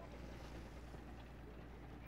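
Faint, steady background noise with a low hum underneath and no distinct events.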